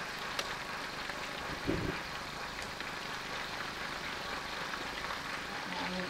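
Whole fish pan-frying in hot oil on a gas stove, a steady sizzle, with one brief low thump just under two seconds in.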